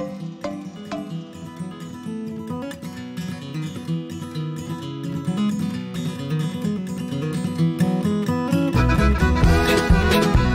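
Background music: an acoustic guitar-led country song, gradually getting louder, with a fuller band and bass coming in near the end.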